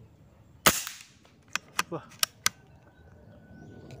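A single sharp report from a PCP air rifle fired once, just over half a second in. About a second later come four quick sharp clicks, the bolt being worked to load the next pellet by hand.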